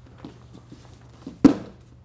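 Bare feet moving on a dojo mat with a few light taps, then one short, sharp impact about one and a half seconds in, as the attacker is wrapped up and bent over into an aikido armlock.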